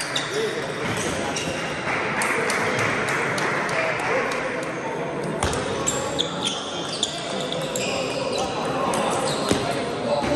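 Table tennis ball strikes: irregular sharp clicks of the plastic ball hitting bats and tables during rallies, over steady background chatter in a large sports hall.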